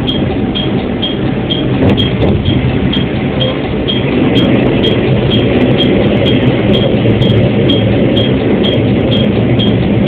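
Diesel railcar (JR Kyushu KiHa 40) heard from the driver's cab, its engine and running gear giving a steady low rumble as the train rolls slowly along the track, a little louder from about four seconds in. A short, high-pitched tick repeats about twice a second throughout.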